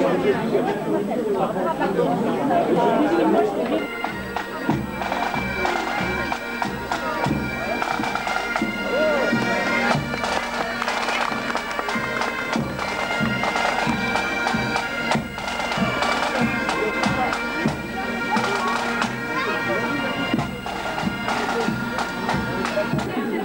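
Bagpipes playing a tune over a steady drone, coming in about four seconds in, with a regular low beat under it; crowd chatter fills the first few seconds.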